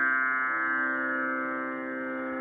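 Steady tanpura drone, the sruti accompaniment to Carnatic singing, sounding on its own with no voice over it.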